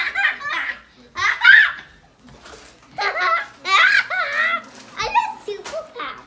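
Young boy laughing hard in several bursts while being tickled.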